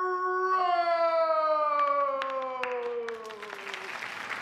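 A man's long, drawn-out shout of the name "Rose", held on one note that slides slowly down in pitch for about four seconds. A few sharp claps come partway through.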